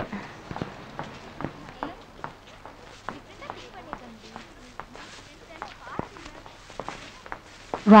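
Paper gift wrapping being opened by hand: scattered light crackles and ticks, with a faint murmur of crowd chatter behind.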